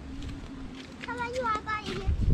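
A child's voice, faint and high-pitched, speaking briefly in the second half.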